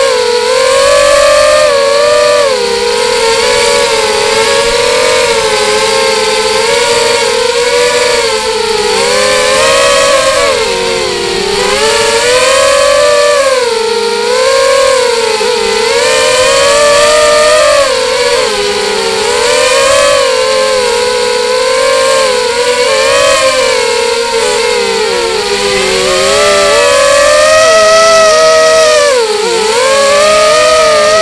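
Brushless motors and propellers of an X-Bird 250 FPV racing quadcopter whining in flight, heard from its onboard camera; the pitch keeps rising and falling as the throttle changes.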